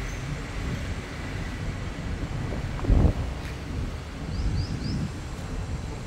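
Steady low rumble of wind on the microphone and road traffic on the bridge overhead. About halfway through comes one loud thump, and shortly after it three short high chirps.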